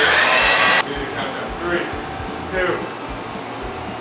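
A loud burst of steady hiss lasting just under a second, cutting off suddenly, then faint voices.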